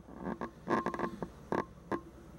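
About half a dozen light knocks and clicks, uneven in spacing, typical of footsteps and camera handling while walking through a camper van's interior, with a brief spoken word near the start.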